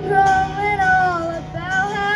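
A young girl and a woman singing together over strummed acoustic guitar, holding a long note, then a short break and a new held note near the end.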